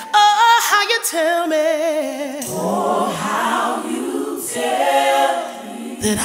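Gospel choir singing, seemingly without instruments, the voices held with heavy vibrato; a fuller massed chord swells about halfway through.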